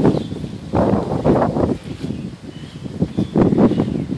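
Wind buffeting the microphone in irregular gusts, strongest about a second in and again near three and a half seconds.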